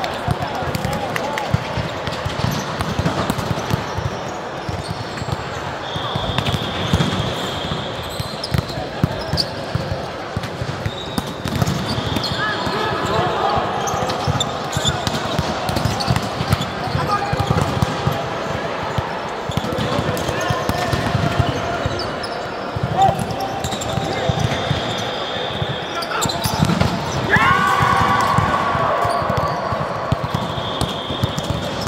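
Indoor volleyball play: repeated thuds of the ball being struck and bouncing on the court, with sneaker footfalls and players' voices calling out.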